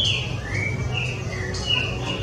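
A small bird chirping repeatedly, about five short notes in two seconds, most of them falling slightly in pitch, over a steady low hum.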